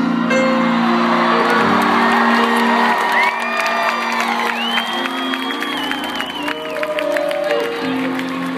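A live band holding sustained chords while a concert crowd cheers, with whoops and long whistles rising over it in the middle stretch.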